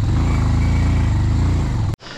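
Motorcycle engine running steadily while riding, a loud low pulsing rumble that cuts off suddenly just before the end.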